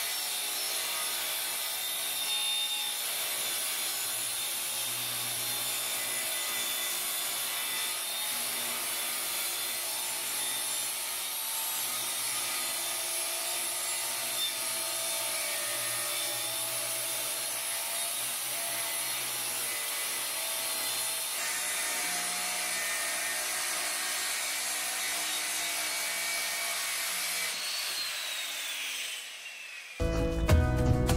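Handheld electric circular saw running steadily as it rips along a long wooden panel. Near the end its whine falls away as the blade spins down.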